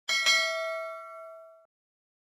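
A notification-bell sound effect: a bright ding struck twice in quick succession, ringing and fading out within about a second and a half.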